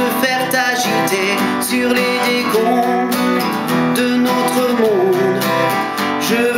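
Steel-string acoustic guitar strummed in a steady rhythm, with a man's voice singing along over the chords.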